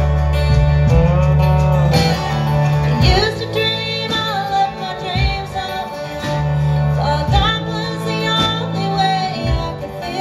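Live country song: a woman singing over an acoustic guitar played flat on the lap, with deep held bass notes underneath. The opening few seconds are instrumental, and the singing comes in about three seconds in.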